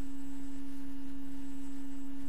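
A steady pure tone held at one unchanging low-middle pitch, with a faint low hum beneath it.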